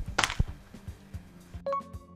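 A softball pitch smacking into a catcher's leather mitt just after the start, one sharp pop, over background music with a steady beat. Near the end a short rising tone sounds.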